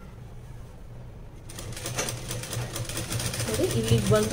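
Sewing machine running and stitching, a steady low hum with a rapid mechanical clatter that grows sharper about one and a half seconds in. A woman's voice starts near the end.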